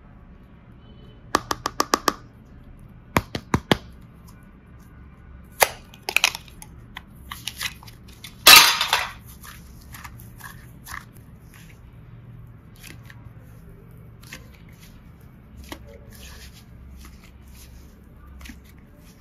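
Hard plastic slime container clicking and snapping as it is handled and pried open, starting with a quick run of about six clicks. About halfway through comes the loudest sound, a short crackling pop, and fainter handling clicks follow.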